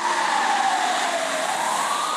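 Opening sound effect of a car advertisement: a loud hissing whoosh carrying one tone that glides down and then back up in pitch.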